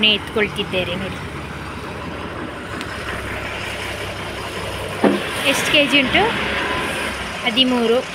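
Steady road traffic noise, with people talking briefly in the first second and again in the second half.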